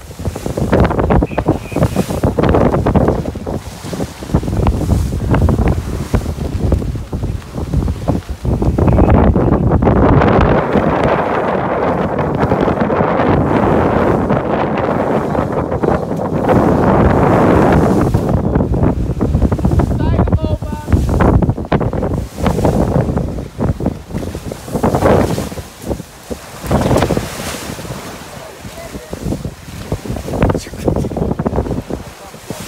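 Wind buffeting the microphone over the rush of water and spray along the hull of a heeled sailing yacht driving through the sea, with a louder stretch of rushing water through the middle.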